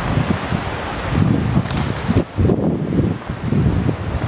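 Wind buffeting the microphone in irregular gusts over the steady rush of a river in flood.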